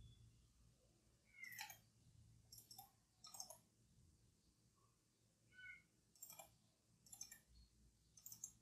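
Faint computer mouse clicks, most of them in quick pairs like double-clicks, spread at intervals through otherwise near-silent room tone.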